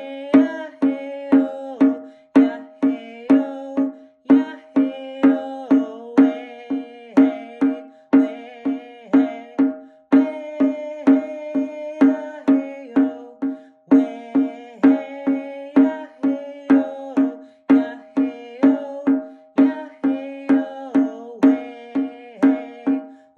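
Rawhide hand drum struck with a padded beater in a steady beat of about two strokes a second, under a man singing a Cree hand-drum song.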